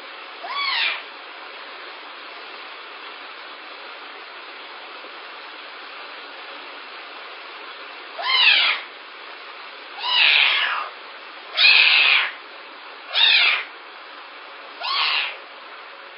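A young pet gives six short high-pitched cries, each rising and then falling in pitch. One comes near the start, then five follow in quick succession over the last eight seconds, over a steady background hiss.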